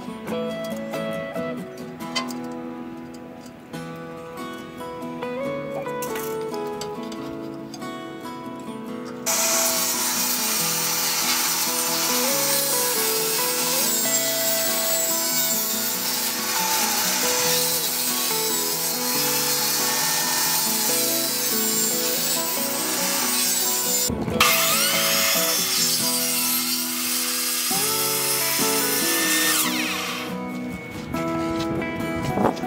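Background music throughout. About nine seconds in, a table saw starts cutting through plywood, a loud steady saw noise over the music. It breaks off for a moment about 24 seconds in, then goes on until near the end.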